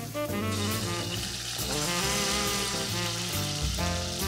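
Beef sizzling as it sears in a hot pot to seal the surface, under background music with brass.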